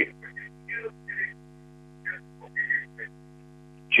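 Steady electrical hum on a telephone call line, with faint, broken snatches of the caller's voice coming through.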